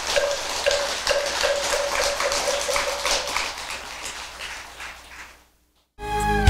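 Audience applauding, a dense patter of many hands clapping that thins out and dies away about five seconds in.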